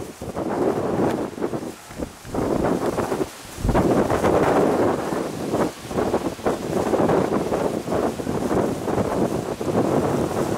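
Wind buffeting the microphone in uneven gusts, with a brief lull about three seconds in followed by a stronger gust.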